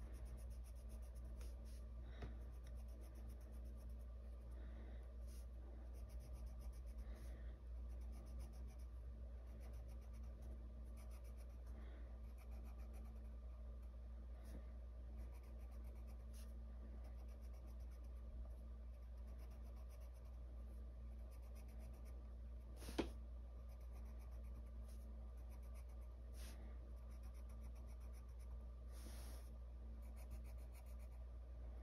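Colored pencil scratching on paper in quiet repeated strokes as leaves are colored in, over a steady low hum. A single sharp click comes about three-quarters of the way through.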